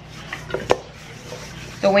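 Raw chicken wings tossed in a stainless steel mixing bowl to coat them evenly in salt and pepper: soft shuffling with two sharp clicks against the bowl, the louder one under a second in.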